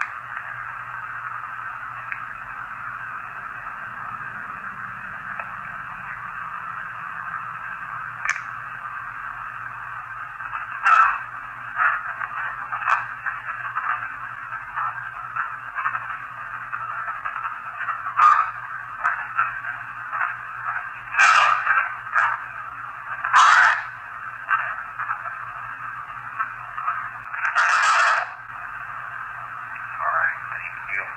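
Spirit box radio static played back through the small speaker of a handheld Panasonic voice recorder: a steady thin hiss broken by short bursts of sound, several of them in the second half.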